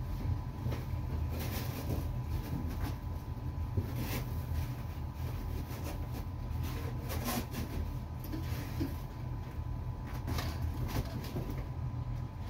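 Steady low rumble with a faint steady tone, and scattered light knocks, thuds and rustles from a child stepping about on a foam gymnastics mat and handling things.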